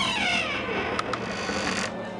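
Sound effect: a pitched sound gliding down over about half a second, two short clicks about a second in, and a hiss that cuts off suddenly near the end.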